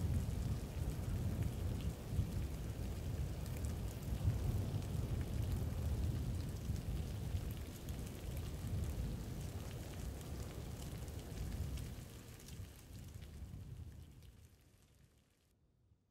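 A steady low rumbling noise with a faint hiss above it, like a rain-and-thunder ambience, fading out over the last few seconds to silence.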